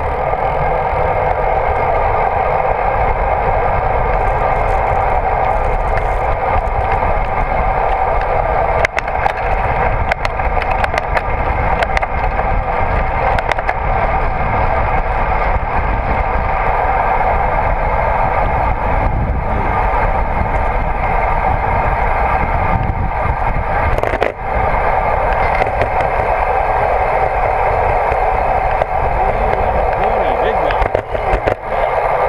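Steady loud rush of wind and tyre noise from a bicycle rolling along asphalt, picked up by a handlebar-mounted GoPro Hero 3, with scattered brief clicks and knocks.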